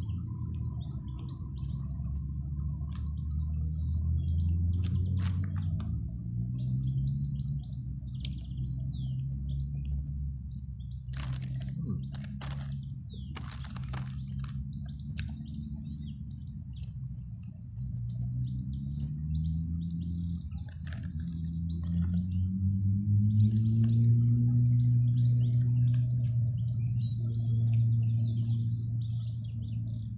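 Wild birds chirping and singing throughout, over a low drone that slowly rises and falls in pitch and is loudest a little after the middle. A few sharp clicks come in a cluster just before the middle.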